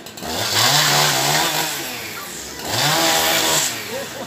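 Chainsaw revved twice. Each rev rises in pitch and holds for about a second before dropping back.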